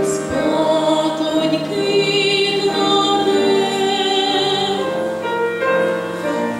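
A girl singing a slow lullaby in long held notes with a light vibrato, with other girls' voices singing in harmony with her.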